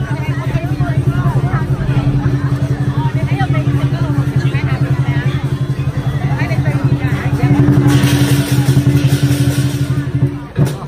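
Chinese lion dance drum beaten in a fast, steady roll, with crowd voices over it; it grows louder and brighter about eight seconds in.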